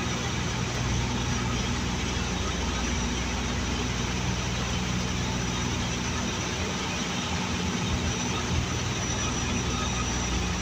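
Steady drone of a Dash 8 Q200's twin Pratt & Whitney PW123 turboprop engines and propellers heard from inside the cockpit in flight: an unbroken hum with constant low tones and no change in pitch.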